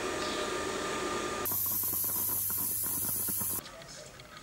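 Steady hissing of steam during coffee making. About one and a half seconds in it changes abruptly to a sharper, higher hiss with a low hum underneath, which cuts off shortly before the end.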